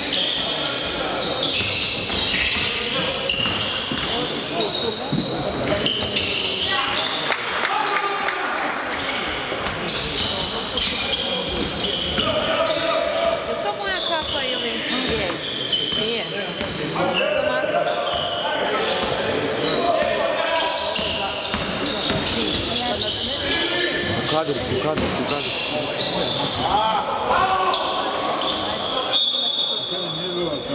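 Live basketball game in a sports hall: a ball bouncing on the wooden court, with players and spectators calling out in the hall's reverberant acoustics.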